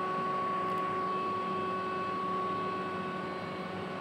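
Steady background hiss with a thin, steady whine: even room noise with no distinct event.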